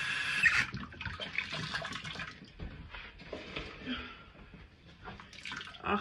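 Bathroom sink tap running hot water, shut off about half a second in, then faint irregular splashing and dripping as a washcloth is handled in the water.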